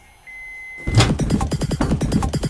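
A microwave's button beep, one steady high tone of about half a second, as the button is pressed. About a second in, loud electronic music with a pounding beat starts.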